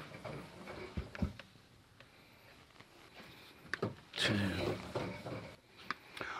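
Faint handling noise as a length of thin radial wire is drawn off a reel and measured out by hand, with two light knocks about a second in.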